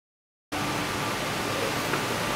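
Steady hiss of background noise, cutting in abruptly about half a second in, with a faint steady hum under it.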